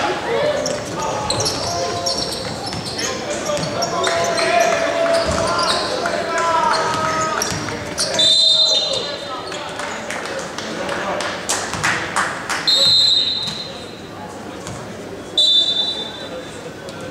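Basketball game in a large gym: a ball bouncing on the hardwood court and players calling out, with three short, high whistle blasts, the first about eight seconds in and the last near the end, as play stops.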